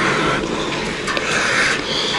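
Rubberised protection suit rustling close to the microphone as its wearer climbs down a ladder, in two swells of noise, a short one at the start and a longer one about a second in.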